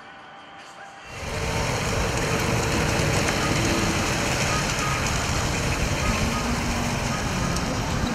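Large-scale garden model train, a diesel locomotive and caboose, running along an elevated outdoor track. From about a second in it makes a steady, noisy running sound of wheels on rail and motor.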